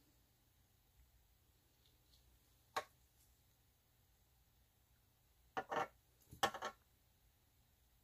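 A few light clicks and knocks of small plastic ink bottles being handled and set down on the work surface: a single click about three seconds in, then a short cluster of knocks around six seconds in.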